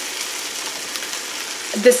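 Food sizzling in a frying pan: a steady hiss.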